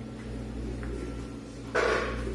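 Top-loading washing machine running mid-wash with a steady low hum. A short rushing noise comes near the end.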